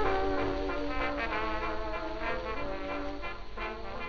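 A 1929 dance-band fox-trot played from a 78 rpm record, with the brass section holding sustained chords and the music growing gradually quieter.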